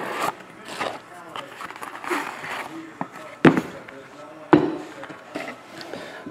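Handling noise from opening a trading card box and pulling out a cased card: cardboard and plastic rustling and scraping, with two sharp clicks about a second apart in the second half.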